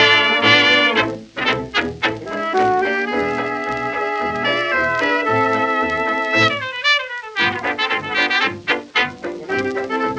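1920s jazz dance band playing an instrumental passage, with trumpet and trombone leading over a steady pulsing beat.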